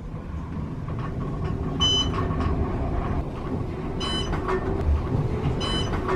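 Elevator car in motion: a steady low rumble, with three short electronic beeps about two seconds apart as it passes floors.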